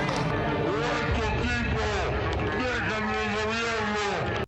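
A man speaking continuously into a podium microphone, his voice amplified over a steady low rumble.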